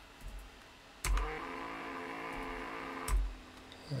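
Hoverboard hub motor running under closed-loop FOC voltage control, giving a steady electrical hum with several overtones. The hum lasts about two seconds, starting and stopping abruptly with a knock.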